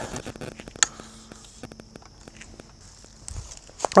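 Footsteps on leaf litter: faint crunching and scattered small clicks, with one sharper click just under a second in.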